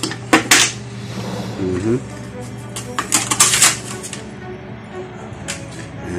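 Character die blocks for a licence-plate embossing press clicking and clacking as they are handled and set into the die tray: a quick double clack about half a second in, a cluster of clatters around three seconds, and a single click near the end, over a steady low hum.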